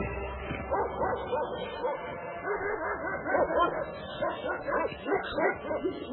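Many short yelping animal calls, dog-like, over background music, growing busier from about two seconds in.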